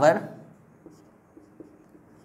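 Marker pen writing on a whiteboard: faint strokes with a few light ticks.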